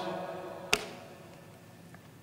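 A pause in speech: the sound of the room fades away, and a single short click comes about three-quarters of a second in.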